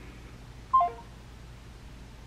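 A phone on speaker sounds a brief three-note beep stepping down in pitch about three-quarters of a second in: the tone of the call being cut off as the caller hangs up. A faint steady low hum runs underneath.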